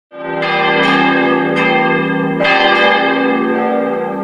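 Church bells ringing: about five strikes at uneven intervals, each ringing on and overlapping the next.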